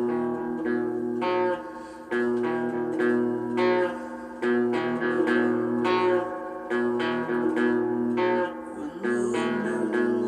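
Guitar chords strummed in a steady rhythm, a new stroke about every three-quarters of a second, each chord ringing on until the next.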